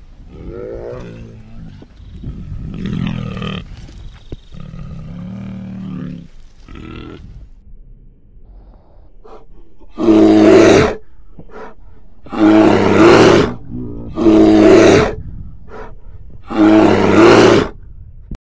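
A bear's calls: quieter calls of shifting pitch over the first several seconds, then, after a short lull, four loud roars about two seconds apart, each lasting about a second.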